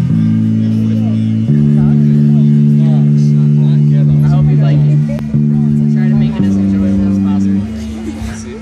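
Amplified electric guitar playing slow, sustained chords at the start of a song, changing chord every second or two with a short break about five seconds in. The loud chords stop shortly before the end.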